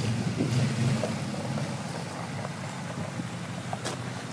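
Chevrolet 283 small-block V8 of a 1964 El Camino running at low speed with a steady low rumble, easing off slightly over the few seconds.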